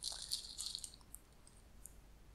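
Whole dried cloves poured from a small plastic spice jar into a palm: a brief, light, dry rattle in the first second, followed by a couple of faint ticks.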